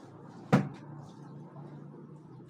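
A single sharp knock about half a second in, from a hard object being put down.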